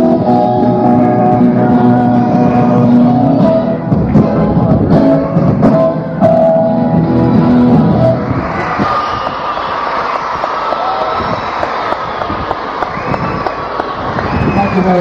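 A live pop band with guitars plays the closing bars of a song, which ends about eight seconds in. An audience then applauds and cheers.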